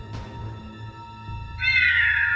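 Background music, then near the end a loud, high creature shriek that slowly falls in pitch, a pterodactyl-style screech effect for a robot pterosaur.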